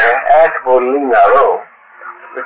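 Only speech: a man talking, pausing about one and a half seconds in.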